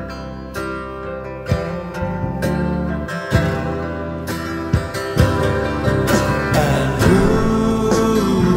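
Instrumental passage of a band's ballad: sustained chords with a struck hit about once a second, growing louder toward the end.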